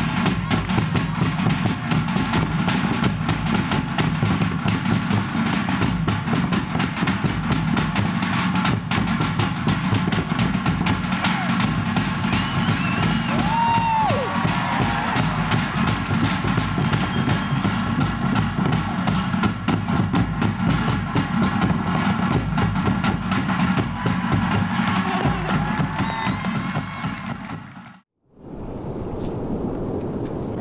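Fast, continuous drumming, the beats coming in a dense steady roll. It fades out near the end, and after a moment of silence a quieter steady noise takes over.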